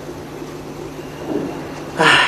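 Steady low electrical hum over a background hiss, with a faint brief sound about one and a half seconds in.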